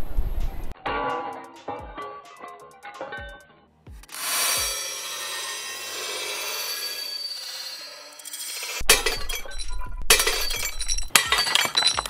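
A painted glass sheet shattering under a thrown brick, with sharp cracks and shards clinking and ringing. The clusters of cracks and clinks come near the start and again in the last few seconds, with background music throughout.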